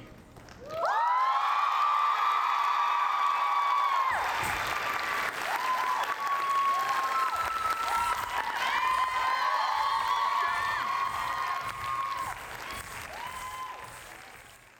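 Audience applauding, with long whooping cheers over the clapping, starting about a second in and fading away near the end.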